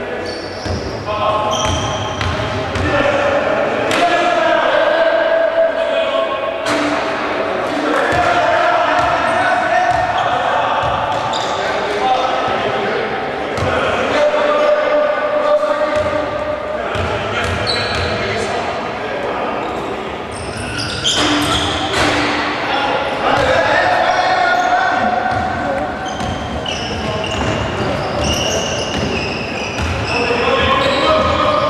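A basketball being dribbled on a hardwood court in a large gym, with players' and spectators' voices calling out over it.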